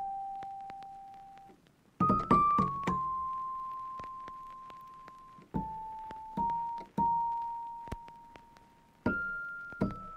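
Background piano music: a slow melody of single notes struck in small groups, each ringing out and fading before the next.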